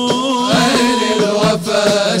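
Arabic devotional nasheed: male voices singing a long, bending melodic line, accompanied by frame drum beats.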